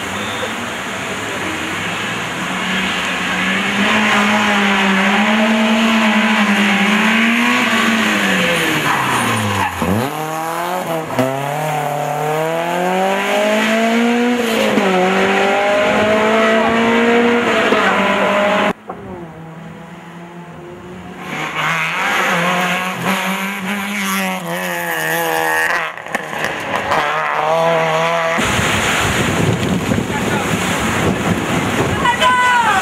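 BMW E30 M3 rally car's four-cylinder engine revving hard through the gears, its pitch climbing and falling back at each shift, with a sharp drop in revs about ten seconds in. The engine sound becomes thinner and quieter for a few seconds, then the revving resumes. Near the end it gives way to steady wind noise on the microphone.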